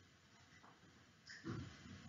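Near silence: room tone in a pause of speech, with a faint breath from the speaker in the last half second.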